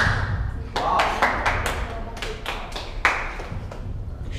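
Scattered hand claps from a small audience after a beatbox round, irregular and a few per second, mixed with crowd voices.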